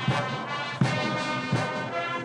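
Brass band music with a steady beat about every three-quarters of a second.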